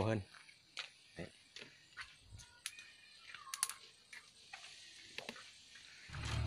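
Mostly quiet, with faint scattered clicks and ticks and a brief high chirp about three and a half seconds in.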